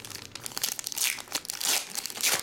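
Foil trading-card pack crinkling in the hands as it is pulled open, a run of crackling rustles that grows louder in the second second.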